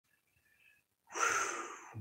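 A man's breathy sigh: a loud exhale through the mouth starting about a second in, strongest at the onset and trailing off.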